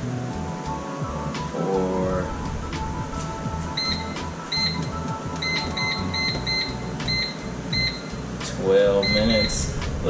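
Digital air fryer's control panel beeping with each button press as its settings are adjusted: about ten short, high beeps, starting about four seconds in, some in quick runs. Background music, a low steady hum and a voice toward the end lie under them.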